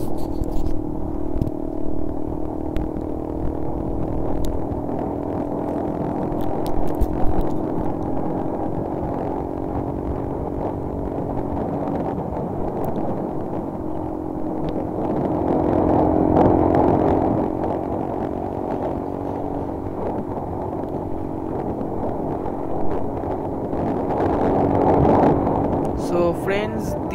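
Motorcycle engine running steadily at cruising speed under a low rumble of road and wind noise, its sound swelling briefly about two-thirds of the way through and again near the end.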